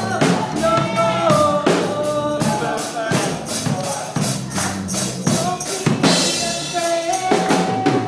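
Worship band playing an upbeat song, with a drum kit keeping a steady beat under a held melody line.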